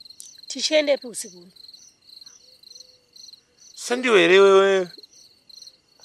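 Crickets chirping steadily in a high, pulsing trill.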